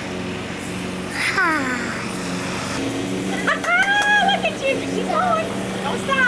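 A young child's high-pitched wordless vocalising: a steep falling glide about a second in, then a long held high note and a few shorter squeals, over a steady low hum.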